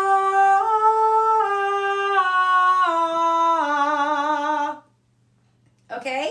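A woman singing a sustained "ah" vocal warm-up on one breath, holding each note steadily and stepping between distinct tones instead of gliding: one step up, then four steps down. The note stops a little before the end.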